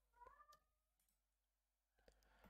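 A domestic cat meowing once, faintly and briefly, just after the start.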